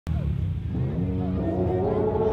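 Small youth ATV engines running in a crowd, with people's voices mixed in. In the second half a pitched sound rises steadily.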